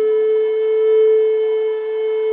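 A flute holding one long, steady note, after a short lower note just before it.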